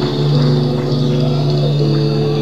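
Live rock band playing an instrumental passage: a steady low drone with held notes above it that shift in pitch.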